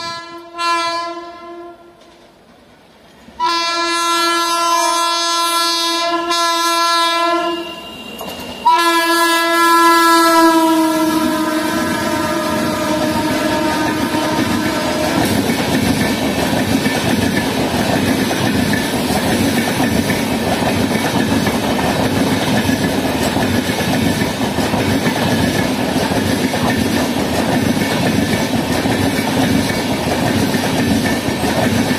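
Indian Railways locomotive horn sounding a short blast, then a long blast of several seconds, then another that drops in pitch as the locomotive goes by. It gives way to the steady rumble and clickety-clack of a long express train's passenger coaches passing at speed.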